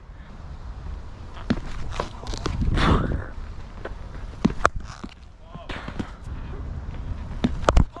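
Scuffs and light knocks of a batter shifting in the crease in a cricket net, then a sharp knock with a heavy thump just before the end, the loudest sound: a delivery met with the bat.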